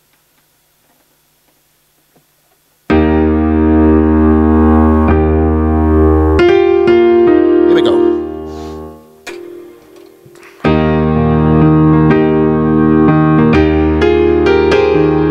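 Electronic keyboard on a soft electric-piano sound playing the slow introduction to a song: after about three seconds of near silence, sustained chords begin, die away almost to nothing around ten seconds in, then a new chord starts.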